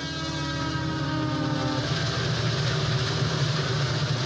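Train sound effect: a train horn sounds for about the first two seconds over the steady rumble of a moving train, and the rumble carries on after the horn stops.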